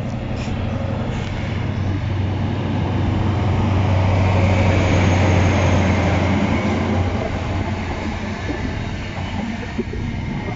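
Class 43 HST power car's diesel engine pulling hard as the train accelerates away. Its low drone builds to a peak as the power car passes, about five seconds in, then fades after about seven seconds into the steadier rumble of coaches rolling by.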